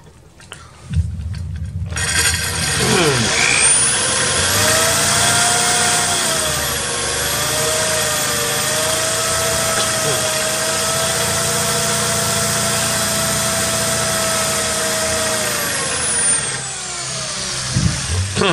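Cordless drill with a 1/4-inch glass bit boring into 6 mm glass, working from the second side of the pane to meet the first hole so the glass does not chip. The motor whine starts about two seconds in and holds steady with a slightly wavering pitch, then winds down near the end.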